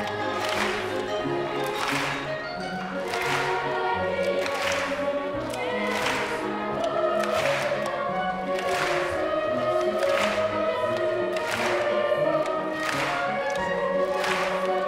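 Choir singing a song with instrumental accompaniment, with the hall clapping along in time, one clap about every second and a half.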